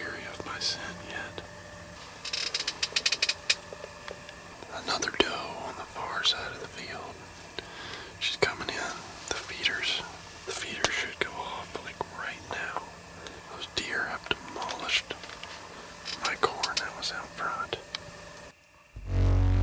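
A man whispering close to the microphone in short phrases, with a quick run of sharp clicks about two to three seconds in.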